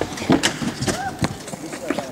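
Skateboard clatter on wooden skatepark ramps: an irregular string of sharp knocks and clacks from wheels and deck.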